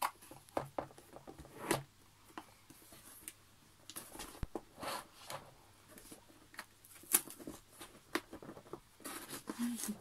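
A cardboard box being handled and opened: scattered taps, knocks and short scraping rustles of cardboard as the box is turned over and its close-fitting lid is worked off.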